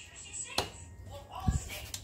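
Two short knocks of kitchen things being handled on the table: a sharp tap about half a second in, then a duller thump a second later, with a brief faint murmur of voice just before the thump.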